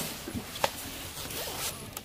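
Faint rustling handling noise with one light click less than a second in.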